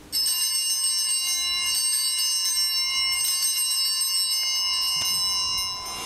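Altar bells rung at the elevation of the consecrated host: a bright, steady ringing of several high tones that holds for about five seconds and fades out near the end.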